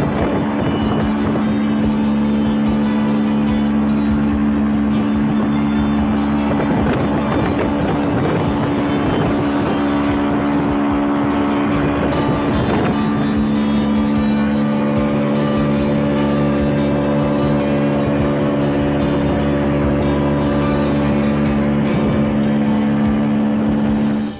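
A boat's motor running steadily while underway at speed, with music playing over it.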